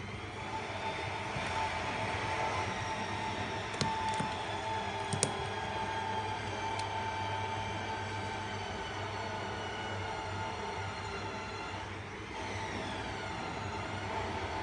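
Steady mechanical hum with several faint tones, some slowly gliding down in pitch, and a few light clicks about four and five seconds in as the opened phone is handled.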